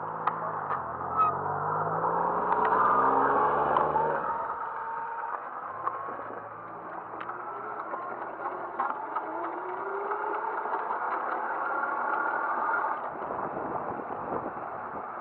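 A scooter rolling along a sidewalk: a whirring drive note that climbs in pitch twice, with scattered clicks and rattles as it rides over the pavement.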